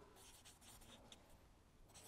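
Faint strokes of a felt-tip marker writing on flip-chart paper.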